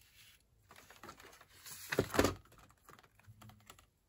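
Sheets of patterned card-weight paper being handled and laid on a wooden tabletop: a run of light taps and rustles, loudest about two seconds in.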